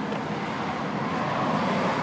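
Steady rumble of road traffic, growing slightly louder about a second in.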